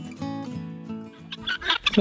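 Acoustic guitar music fading out, then guinea fowl calling in a quick run of short, rapid calls from about a second and a half in.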